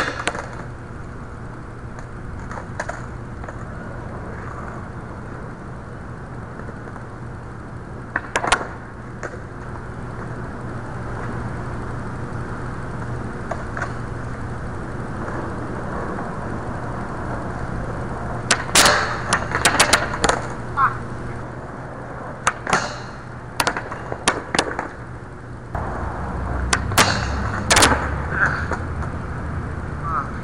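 Skateboard sounds: wheels rolling on concrete and sharp clacks of the board and trucks striking the concrete and a metal flat bar. A lone knock comes early, and a quick run of clacks fills the second half.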